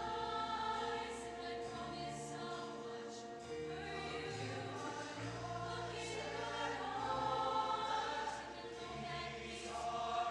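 Large mixed-voice show choir singing, with long held chords shifting every second or two over a steady low bass line.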